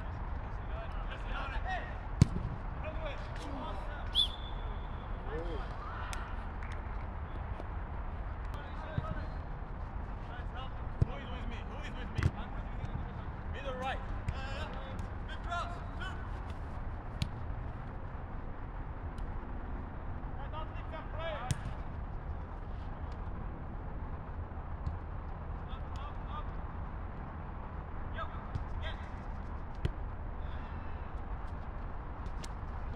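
Football being kicked on an artificial turf pitch: sharp thuds of the ball now and then, the hardest about two seconds in, typical of a shot on goal, with players' distant shouts over a steady low background rumble.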